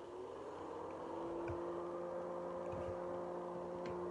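Vacuum cleaner running with a steady motor hum.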